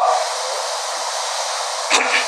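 A steady, even hiss that is fairly loud, with a brief click just before the end.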